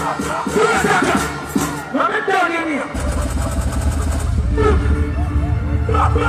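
Live dancehall performance through a sound system. A vocalist's voice rides over the backing for the first half, then a heavy, steady deep bass comes in about halfway through and carries on.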